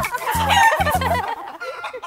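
A hen clucking sound effect over the closing notes of a children's nursery-rhyme song. The music stops a little past halfway, and the clucking goes on after it.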